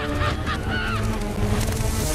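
Cartoon soundtrack: background music with two short honking calls, then a rapid clatter of running hooves starting near the end.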